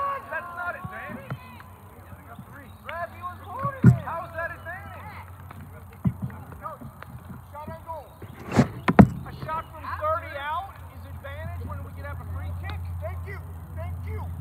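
Players calling and shouting to each other across a soccer field, many short distant cries overlapping. A few sharp thuds cut through, the loudest a pair about nine seconds in, and a low rumble builds near the end.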